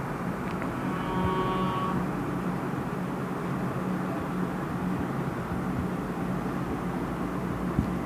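Steady background hiss with a low hum, with a dry-erase marker writing on a whiteboard. A faint high squeak comes about a second in.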